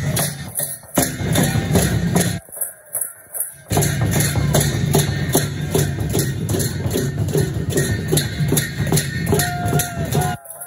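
Sakela dance music from a Kirati dhol drum and jhyamta hand cymbals beaten in a steady rhythm of about three to four strokes a second. The sound drops out briefly about two and a half seconds in.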